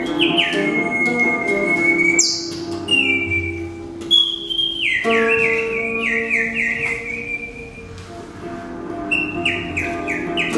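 Improvised live music: high, bird-like whistled chirps and glides, one long held whistle note near the start and a run of short falling chirps in the middle, over sustained low electric guitar notes.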